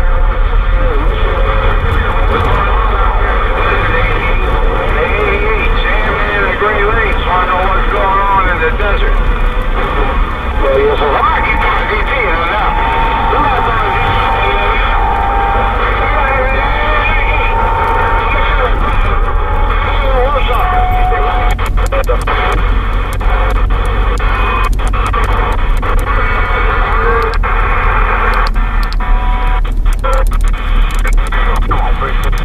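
A CB radio's speaker on the 27 MHz band gives a steady hiss of static with faint, garbled voices of distant stations and a few held whistling tones. Brief crackles come near the end.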